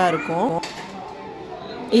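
A woman's voice briefly at the start, then quieter shop background with light clinking, as of small metal or glass items.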